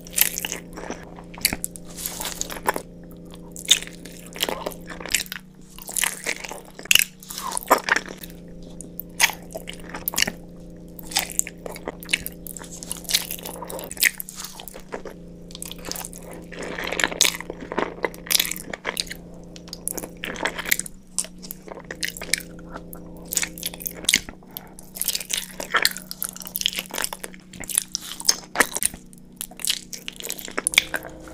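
Close-miked eating sounds of meatballs in tomato sauce and spaghetti being bitten and chewed, with frequent short, irregular mouth clicks.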